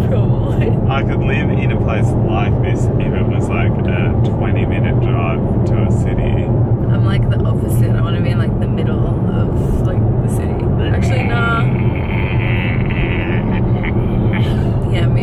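Steady road and engine noise inside the cabin of a moving car, a constant low hum, with people talking over it.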